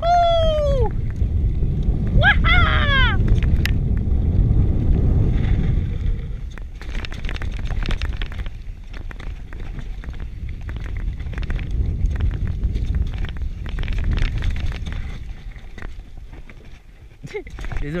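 Giant Full-E+ electric mountain bike descending a dirt and rock trail: heavy wind buffeting on the camera microphone and the rumble of tyres rolling for the first several seconds. From about six seconds in, the bike rattles and clatters over rocks with many short knocks. Two brief high, wavering squeals in the first three seconds.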